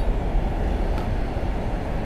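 Steady low rumble of a car moving slowly past, with street traffic noise and no distinct events.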